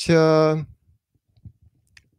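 A speaker's drawn-out hesitation sound, one held vowel lasting under a second, then a pause with a few faint clicks.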